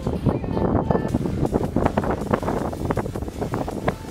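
Wind buffeting a handheld phone's microphone, an uneven gusty rumble.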